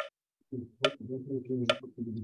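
Short, sharp forceful exhalations of Kapalabhati (skull-shining) breathing, three in a steady rhythm a little under a second apart, with a man's voice speaking between them.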